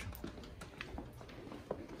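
Faint footsteps on a hardwood floor: a few soft, irregular taps over a low, steady room hum.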